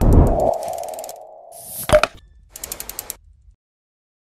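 Sound effects of an animated logo end card. A sudden loud hit with a whoosh opens into a held tone that fades. A sharp impact comes about two seconds in, then a quick run of clicks, and it all cuts off sharply after about three and a half seconds.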